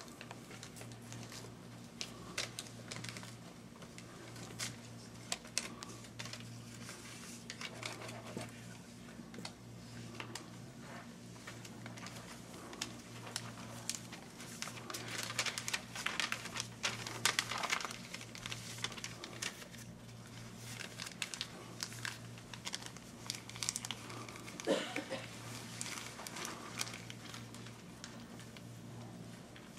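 Paper rustling and crinkling in a hushed room, with scattered small clicks and knocks. The rustling is busiest around the middle, with a sharper knock near the end, over a steady low electrical hum.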